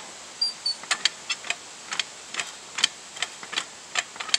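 Sun Joe manual hydraulic log splitter being pumped by its long handle, the ram pressing into a green log: a string of irregular sharp clicks, about two or three a second.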